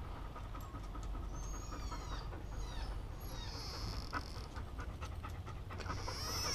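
Belgian Malinois panting steadily, the heavy panting of an anxious, thirsty dog.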